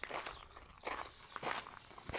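Footsteps on grass and gravel, a few steps roughly half a second apart, as the person filming walks.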